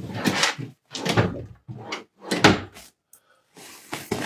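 Handling noises on a bed: a series of short rustles and bumps, about five in four seconds, as someone moves about and handles bedding and a bag.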